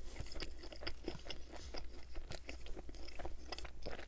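A mouthful of pizza being chewed close to the microphone: fairly quiet, a steady string of small, irregular mouth clicks.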